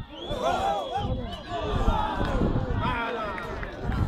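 Several men's voices shouting and calling over one another, with no single clear speaker: spectators and players at a football match.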